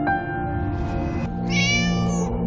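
A cat meows once from inside a pet carrier, a short call about one and a half seconds in, over soft background music.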